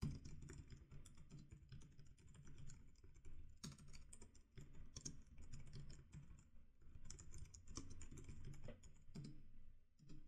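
Faint typing on a computer keyboard: irregular runs of quick key clicks with short pauses between them.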